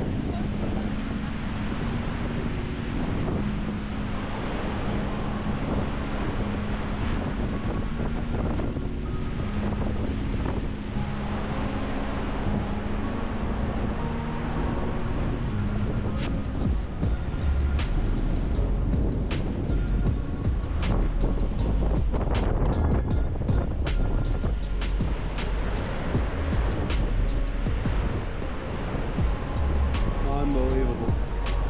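Steady roar of the Horseshoe Falls at Niagara, with wind on the microphone, under background music. About halfway through, a fast clicking beat with low thumps comes in.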